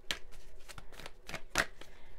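A deck of tarot cards being shuffled by hand: a quick run of light card flicks and riffles, with one louder snap about one and a half seconds in.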